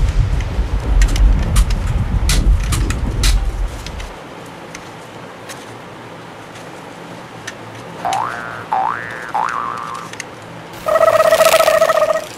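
Edited-in cartoon sound effects over toy gun handling: a loud explosion rumble with crackles for the first four seconds, then a few sharp clicks of plastic toy gun parts. Later come three quick rising boing-like sweeps and, near the end, a steady electronic tone lasting about a second.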